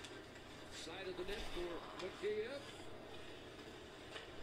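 Faint hockey broadcast audio: a play-by-play commentator's voice, low under a steady hum of arena crowd noise.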